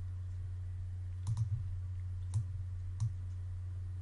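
Computer mouse clicks: a quick double click about a second in, then two single clicks, over a steady low electrical hum.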